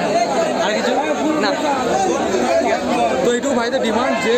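Several people talking at once close by: overlapping chatter of a crowd of voices.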